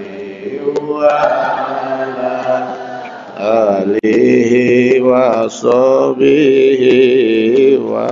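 Male voices chanting a melodic Islamic devotional recitation. From about three seconds in, one strong voice comes to the fore and is louder, holding long notes that waver in pitch.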